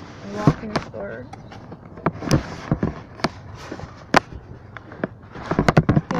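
Handling noise from a phone camera being carried: irregular sharp clicks and knocks with rustling, thickest in a quick cluster near the end, and faint muffled voices underneath.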